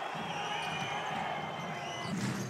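Steady noise of a large crowd in an indoor basketball arena.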